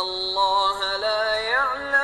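Quran recitation: one voice chanting Arabic verses in melodic style, holding long notes that step between pitches, with a quick ornamented run about one and a half seconds in.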